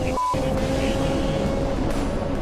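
Kawasaki superbike's engine running at a steady high cruising speed, one held tone under heavy wind rush. A brief break with a short higher beep about a quarter of a second in.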